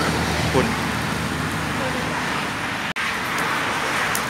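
Steady road traffic noise with a low, continuous drone, cut off for an instant about three seconds in.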